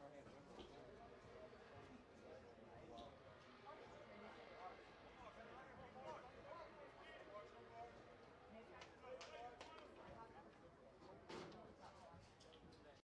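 Near silence: faint voices of players and spectators around a baseball field. Near the end comes a single sharp crack as the batter's bat meets the pitch.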